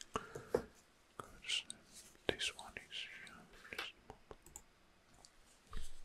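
Soft, close-miked whispering that does not come out as words, with scattered small clicks.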